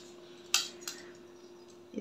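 Glass crystal beads clinking against a small glass cup as one is picked out: one sharp click about half a second in, then a fainter one shortly after.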